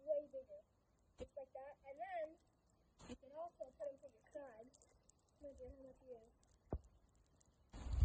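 Faint, unintelligible talking in the background, with a few soft clicks and a short burst of noise near the end.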